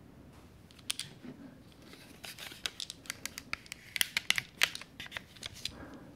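Close-up ASMR tool sounds: a rapid run of sharp clicks and scrapes from small tools handled right at the microphone. It starts sparse about a second in and grows dense and louder in the middle.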